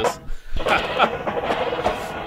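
Drum corps percussion playing from a 1984 judge's tape recording of a finals performance, with a man laughing over it about a second in.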